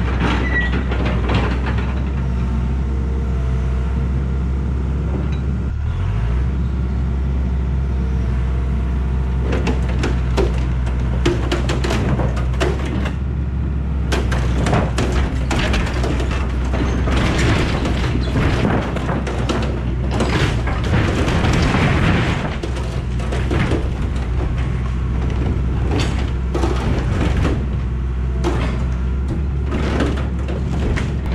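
Hitachi EX100 excavator engine running steadily under load while it drags a sheet-metal carport roof down. The corrugated metal creaks, bangs and crashes repeatedly from about ten seconds in, loudest a little past the middle, with music playing over it.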